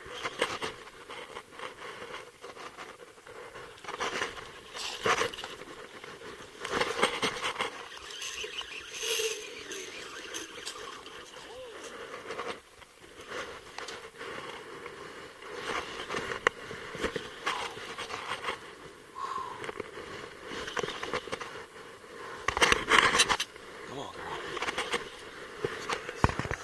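Irregular splashing and rustling as a large hooked steelhead is played at the surface and brought toward a landing net, with clothing brushing against the body-worn camera in bursts.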